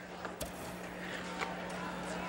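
Ice hockey arena ambience: a steady crowd murmur with a sharp click about half a second in and a few lighter clicks of play, over a constant low hum in the old broadcast audio.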